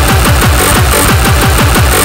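Hard, fast electronic dance music of the 90s tekno/gabber kind: a dense run of kick drums, each dropping quickly in pitch, under a busy, noisy upper layer.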